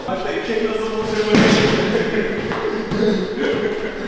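Voices in a large, echoing room, with one loud thump about a second and a half in and a few lighter knocks after it.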